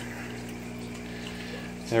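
Hang-on-back aquarium filter running: a steady hum with the sound of water running back into the tank.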